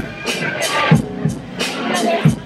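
Hip hop beat from a live DJ set playing loud over a club sound system, with a steady kick-and-cymbal drum pattern and voices in the mix.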